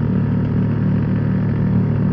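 Yamaha R15's single-cylinder four-stroke engine running at a steady cruising speed, its hum even with no rise or fall in pitch.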